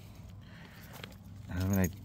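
Faint background with a few soft clicks and a light jangle, then a man's voice starts near the end.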